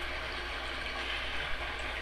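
Steady background hiss with a constant low hum: the recording's room tone and microphone noise, with no distinct event.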